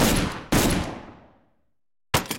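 Two gunshots about half a second apart, each sudden and loud with a long echoing tail that fades over about a second.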